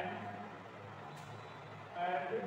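A steady low hum in the background, with the tail end of a man's voice at the very start.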